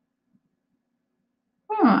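Near silence: room tone, until a woman begins speaking near the end.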